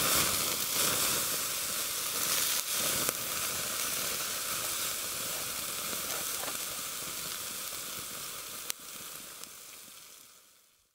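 Campfire embers and flames hissing and crackling close up, with one sharp pop near the end, gradually fading away at the end.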